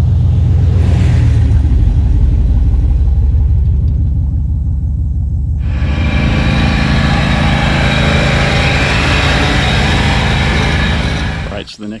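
Older Chevrolet pickup truck's engine running with a steady low rumble as the truck drives through the field. About halfway through, a loud rushing hiss joins it suddenly.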